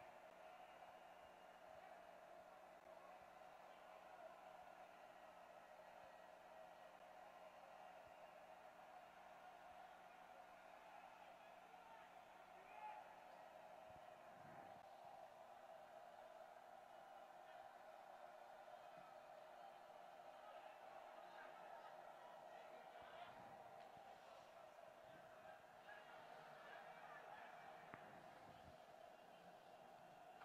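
Near silence: faint, steady ambient sound from the stadium field, with a few faint distant voices.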